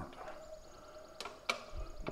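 Two sharp clicks about a second apart as the push button of a stainless-steel drinking fountain is pressed, then a low thump. No water runs because the fountain is turned off.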